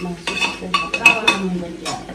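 A metal spoon stirring inside a metal pressure cooker pot, knocking and scraping against its sides. It gives a run of about six or seven sharp clinks, each with a brief ring.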